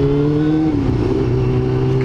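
Yamaha R6 inline-four engine running steadily while riding. Its pitch climbs slightly, then dips a little under a second in.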